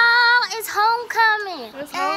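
Young women's high-pitched voices singing out long, wordless notes, playful sung squeals, with a downward slide in pitch about halfway through.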